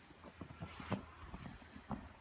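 Irregular crunching and knocking: footsteps on packed snow mixed with rubbing and bumping from a handheld phone being swung around, the sharpest knock about a second in.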